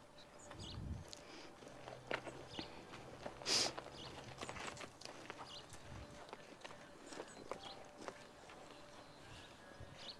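Faint hoofbeats of a saddled horse walking on soft dirt arena footing, with a person's footsteps alongside. There is one louder short burst of noise about three and a half seconds in.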